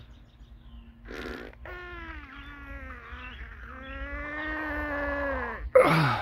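A man's long, drawn-out groaning yawn of about four seconds, after a short intake of breath. The pitch wavers and then drops away at the end, and a loud breath out follows.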